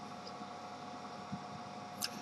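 Faint steady background hum and hiss of room tone, with one faint tick about a second and a half in.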